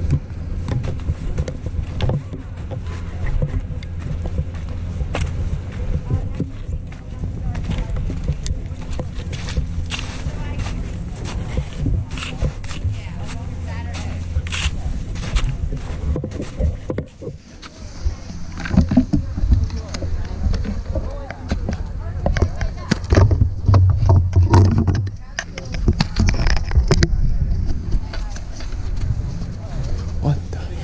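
Heavy rain and hail striking an action camera's housing: a dense, irregular patter of clicks over a steady low rumble of wind and handling noise, heavier in the second half.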